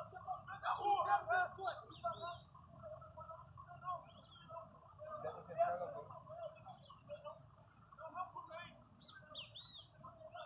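Faint, indistinct voices of people some way off, with birds chirping now and then, most clearly near the end.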